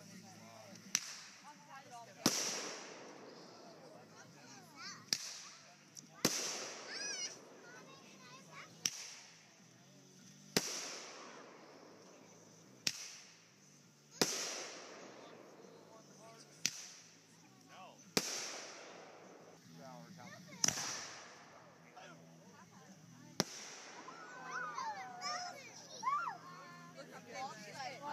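Fireworks going off in a steady sequence: about six times, a sharp crack is followed a second or so later by a louder bang that trails off. The pairs come roughly every four seconds.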